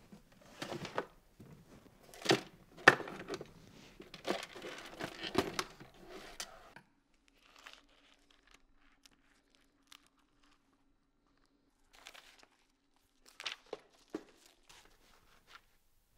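Paper and thin cardboard packaging being rustled, crinkled and torn by hand, dense and loudest in the first seven seconds, then a few sharper crackles and rips near the end.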